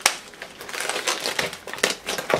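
Thin plastic wrapping and the clear plastic dome lid of a takeaway sushi bowl crinkling and crackling as the bowl is handled and set down, with a sharp click at the start.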